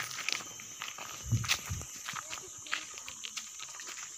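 Footsteps crunching on a dirt and gravel path strewn with dry leaves, with a steady high-pitched drone behind. A couple of low bumps come about a second and a half in.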